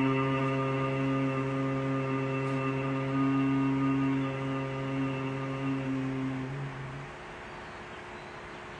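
A man humming one long, low, steady note in a seated yogic chanting practice. The hum thins out and stops about seven seconds in.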